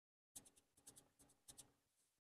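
Faint scratchy tapping, about six light clicks over a second and a half, from a small hand-held tool touching and working the surface of a freshly poured acrylic painting.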